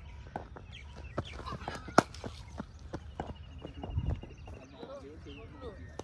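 A single sharp, loud crack about two seconds in, a cricket ball struck by a bat in practice nets, with lighter knocks around it. Birds call in the background, including a rapid trill.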